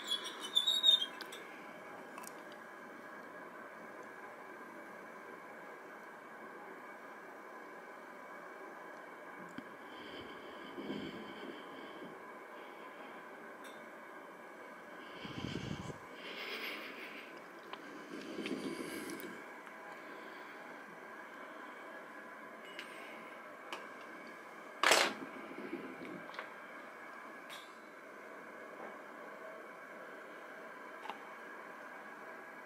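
Wire door of a plastic pet carrier unlatched with a couple of sharp clicks, then soft scattered handling knocks and rustles as a dish is set inside, over a steady faint hum. Later comes one sharp click, the loudest sound.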